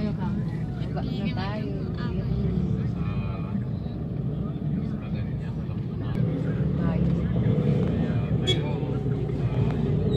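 Steady low engine and road rumble of a moving vehicle, with motor scooters passing close by and voices in the background.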